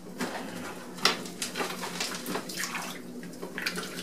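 Wet clay being worked by hand on a potter's wheel: irregular wet squelching and splashing over a steady low hum, with one sharp knock about a second in.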